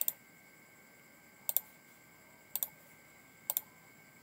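Computer mouse clicking: three quick double clicks about a second apart.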